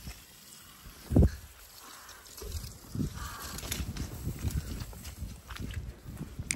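Handling noise as a phone camera is carried and set down: a single dull thump about a second in, then faint low scuffs and rustles.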